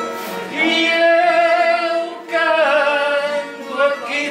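A woman singing fado, holding long notes with a wide vibrato in two phrases with a brief breath between them, over acoustic guitar accompaniment.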